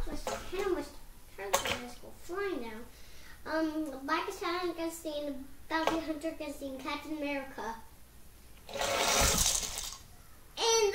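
A child's wordless voice making drawn-out, pitch-bending vocal sounds while holding the toy monster trucks at the top of the ramp. Near the end comes a burst of rushing noise about a second long as the trucks are released down the ramp.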